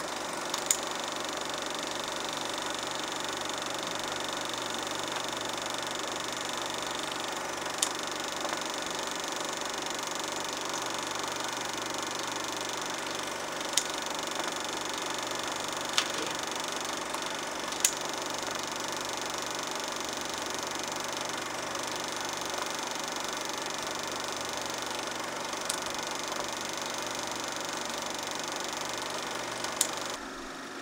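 Two film projectors running with a steady mechanical whir and fast, even flutter, with a handful of sharp clicks scattered through.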